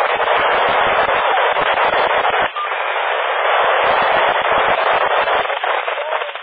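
Loud FM static from a PMR 446 radio receiver, a steady hiss with the channel open on a weak or noisy signal. It breaks off briefly about two and a half seconds in, then resumes.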